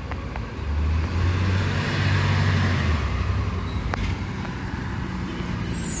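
A motor vehicle's low rumble with road noise that swells in the middle and fades, like a vehicle going by, with a single short click near the end.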